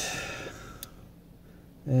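A breath trailing off, then a single faint click from the Leatherman Rev multitool's metal parts a little under a second in; otherwise low room tone.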